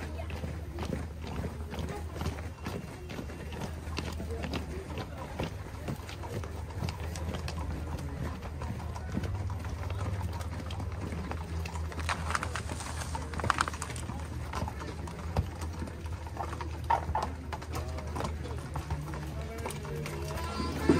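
Horses' hooves clip-clopping on the street as a line of riders approaches, with people's voices mixed in.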